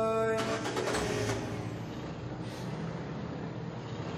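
A car close by: a burst of noise about half a second in, then its engine running with a steady low rumble.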